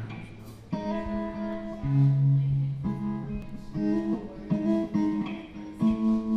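Electric guitars playing slow, sustained chords that ring out and change about once a second, after a quieter start.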